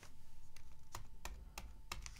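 Computer keyboard keys tapped about five times at a steady pace, roughly three a second, as a number is typed in.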